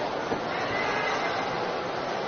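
Steady murmur of a large indoor arena crowd, with a few faint thuds of a gymnast's hands landing on the pommel horse.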